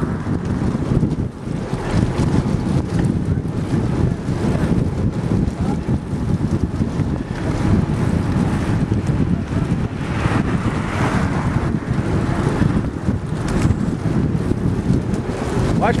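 Wind buffeting the microphone of a moving bicycle, steady and loud, with the rumble of bicycle tyres rolling over wooden boardwalk planks.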